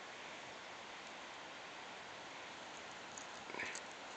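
Quiet outdoor ambience: a steady faint hiss, with a brief faint sound about three and a half seconds in.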